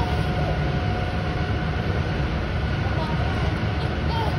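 Steady low rumble of an indoor pool hall, an even roar without breaks, with faint higher hum tones over it.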